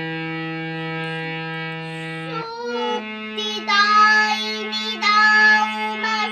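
Bina hand-pumped reed harmonium sounding steady held notes, moving to a new chord about two and a half seconds in. A child's singing voice comes in over the harmonium from about three and a half seconds in.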